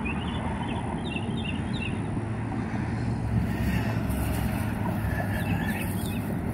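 Steady hum of road traffic, with a few faint high chirps in the first couple of seconds.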